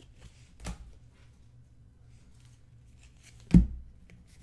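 Trading cards being handled and flicked through by hand in soft clicks and rustles, with a light knock a little under a second in and a sharp thump on the desktop about three and a half seconds in, the loudest sound.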